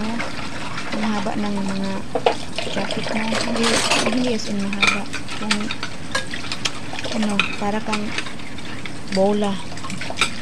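Tap water running into a stainless steel sink while dishes and a bundle of chopsticks clatter and click under rubber-gloved hands, with a busier patch of rattling about four seconds in. A tune of held pitched notes sounds over it, loudest near the end.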